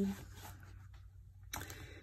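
The tail of a spoken word, then a faint steady low hum; about a second and a half in, a brief soft rustle of paper being handled.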